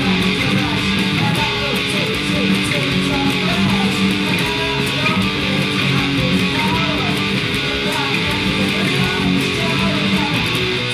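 Electric guitar strumming the turnaround B, D-flat, G, F-sharp, G over and over at a quick tempo, with bass and drums behind it.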